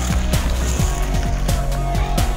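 Loud electronic-style music with a steady bass line and a fast, regular kick-drum beat, about three beats a second.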